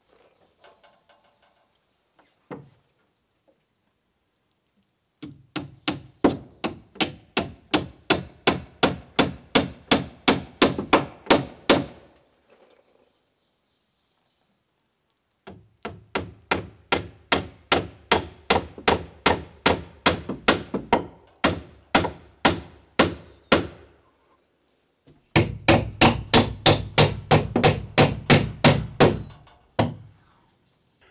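Hammer nailing a wooden stud into a gable-end frame: three runs of rapid, even blows, about three a second, with short pauses between the runs.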